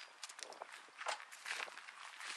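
Footsteps on asphalt, scuffing at about two steps a second.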